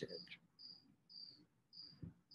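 A cricket chirping faintly and steadily: short high chirps, about two a second, evenly spaced.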